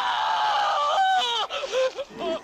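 A man crying out in pain: one long wavering cry that falls in pitch, then a few shorter strained cries.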